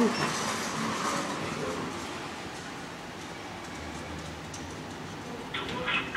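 Otis Gen2 lift car travelling up one floor: a steady running hum and whoosh inside the car. Near the end there is a short brighter sound as it arrives and the doors open.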